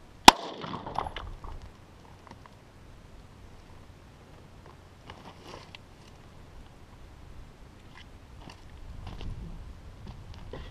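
A single 9mm Luger pistol shot about a third of a second in, with a short ringing echo and clatter dying away over the next second. Later come a few faint clicks, and near the end crunching footsteps on gravel.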